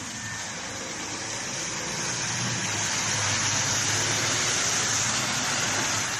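Street traffic noise on a wet road: a steady tyre hiss that swells a little around the middle.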